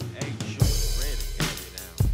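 Acoustic drum kit played with sticks: kick and snare hits over a hip-hop backing track. A deep sustained bass comes in a little past a quarter of the way through.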